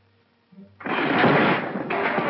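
A sudden loud crashing noise breaks in a little under a second in after near quiet, dense and rough, and carries on with a brief dip.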